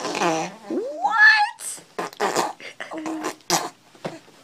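A baby blowing raspberries: several short, sputtering lip buzzes in the second half, after a voice slides upward in pitch about a second in.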